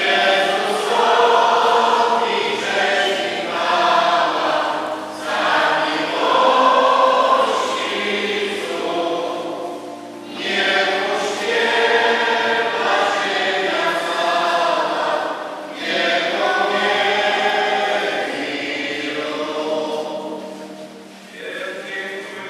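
A choir sings a Communion hymn in long phrases, dipping briefly about every five seconds between lines.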